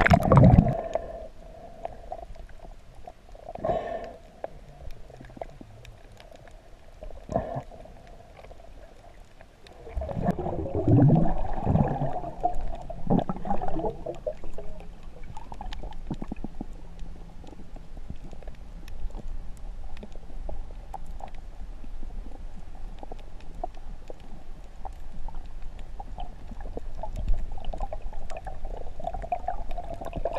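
Muffled gurgling and bubbling of water heard through a camera held underwater while snorkelling over a coral reef. The louder gurgles come right at the start, at about four and seven seconds in, and in a longer spell from about ten to fourteen seconds, then the sound settles into a steady low murmur.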